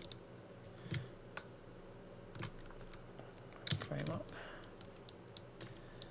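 Scattered, irregular clicks of a computer keyboard and mouse being operated, with a brief low hum of a voice about four seconds in.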